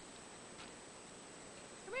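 Faint, steady background hiss with a light tick about half a second in; at the very end a man calls "here" in a high, rising voice.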